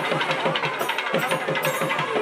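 Festival procession music: fast, even drumbeats, about six a second, over a steady held tone.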